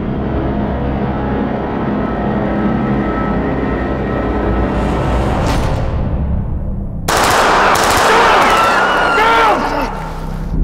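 Dramatic trailer music building under a rising whoosh. About seven seconds in, a sudden loud burst of rapid automatic gunfire runs for about two and a half seconds and then cuts off abruptly.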